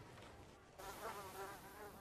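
Faint buzzing of flying insects, a thin wavering hum that sets in about a second in over a low background hiss.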